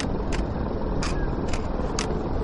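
Distant fireworks display: sharp crackling pops a few times a second over a steady low outdoor rumble.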